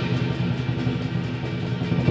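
Lion dance percussion ensemble of drum, cymbals and gong playing a softer passage, with few cymbal crashes and a steady low ring underneath.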